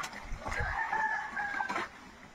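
A rooster crowing once in the background, a single held call lasting a little over a second.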